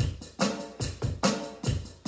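Drum kit played with sticks in a steady beat of about two and a half strikes a second (144 beats per minute), each strike with a low thump and a bright crack.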